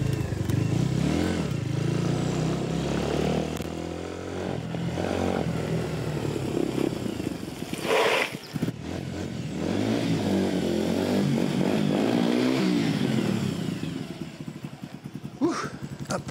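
Motorcycle engine running as it is ridden, its pitch rising and falling with the throttle, with a short loud noise about eight seconds in. The engine sound fades near the end.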